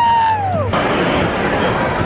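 A girl's long, high-pitched cheering yell that falls in pitch at the end and cuts off abruptly under a second in. It gives way to the steady noise of a baseball stadium crowd.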